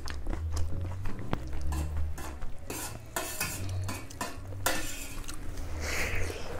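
Fingers mixing rice with nettle soup on a metal plate: wet squishing and scraping with many small irregular clicks against the plate, over a steady low hum.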